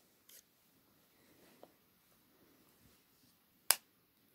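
Quiet handling, then a single sharp click near the end: the lid of a Soundcore Liberty Air 2 earbud charging case snapping shut.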